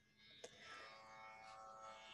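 Near silence with a faint, steady musical drone of several held tones. It swells slightly after a soft click about half a second in.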